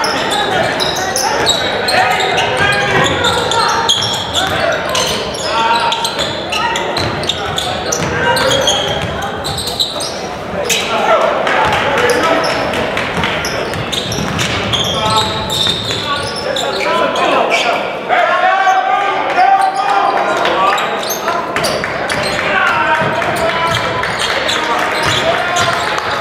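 Basketball game in a school gym: the ball bouncing and sharp knocks on the hardwood floor, with indistinct voices of players and spectators echoing in the hall.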